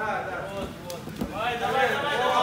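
Men's voices calling out and talking, with a few short knocks around the middle.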